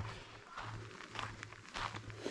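Faint footsteps on a forest floor of pine needles and duff, a few soft scuffs while walking, over a low steady hum.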